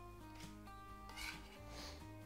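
A kitchen knife's blade being wiped clean by hand, chopped venison scraped off it into a bowl: a short soft scrape about half a second in and a longer one near the end, over quiet background music.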